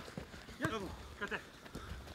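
Football boots striking the ball and players running on a grass pitch during a close dribbling drill: a few short, sharp knocks among scuffling steps.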